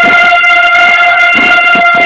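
Processional band music: one long note held steady at full strength, with uneven low thumps underneath.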